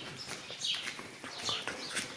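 Birds chirping: about three short, high, falling chirps, spread through the moment.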